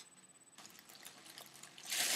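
Mostly quiet, with a faint hiss and a few small clicks. Near the end a breathy hiss rises as helium is drawn from a balloon at the mouth.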